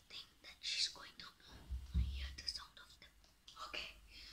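A boy whispering quietly in short broken phrases, counting under his breath for hide-and-seek.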